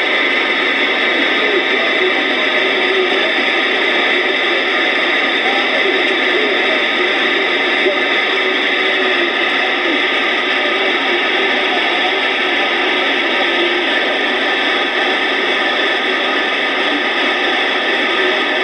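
Electronica Model 360 AM/SSB CB transceiver receiving through its speaker. There is a steady hiss of static with faint, garbled radio voices under it.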